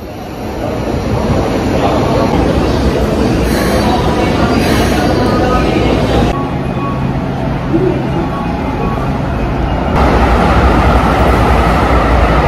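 Train and station noise: a steady rumble from a train at the platform, with indistinct voices mixed in. The background changes abruptly twice, about six and ten seconds in.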